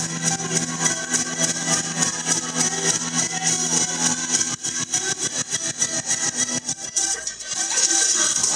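Live band music with guitar over a quick, steady percussion beat; the sound thins briefly about seven seconds in, then returns fuller.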